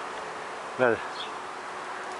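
A swarm of honeybees buzzing: a steady, dense hum of many bees around a tree branch.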